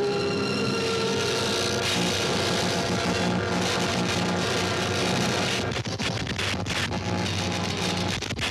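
Loud dramatic orchestral film score mixed with a harsh, noisy sound effect. From about six seconds in, a rapid irregular crackling breaks in and out.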